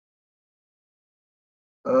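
Dead silence, broken near the end as a man's voice starts speaking again.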